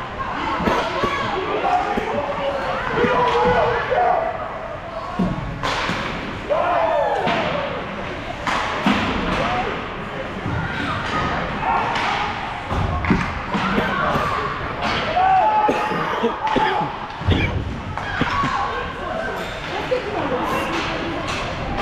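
Ice hockey game in an indoor rink: repeated thuds and slams of the puck and players against the boards, amid shouting voices that carry through the large hall.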